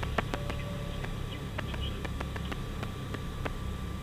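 Steady low drone of a Piper Navajo's twin piston engines heard inside the cockpit during the landing, with scattered light clicks and a faint thin hum.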